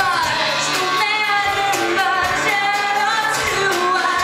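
Live music: a woman singing over acoustic guitar and a drum kit.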